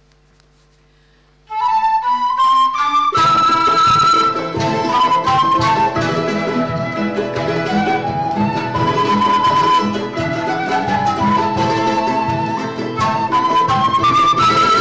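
A flute melody starts about a second and a half in, climbing in steps. About three seconds in, an Andean-style folk ensemble joins with a frame drum, plucked strings and panpipes, playing a steady beat under the flute.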